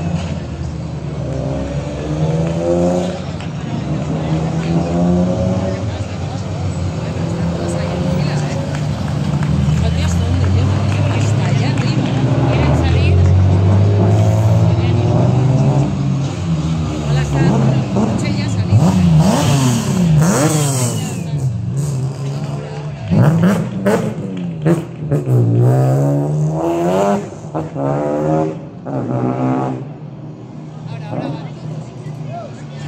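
Rally car engines revving through a hairpin as the cars come down one after another, the pitch falling and rising over and over as they brake, change gear and accelerate. The second half is busier, with quick rev blips and several sharp cracks.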